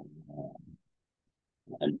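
A man speaking, his words trailing off low in the first second, then a short gap of complete silence before he starts speaking again near the end.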